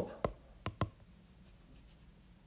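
A stylus tip tapping on a tablet's glass screen: three sharp taps within the first second, then a few faint ticks near the end, as the pen tool is switched to the eraser and the eraser is worked across the screen.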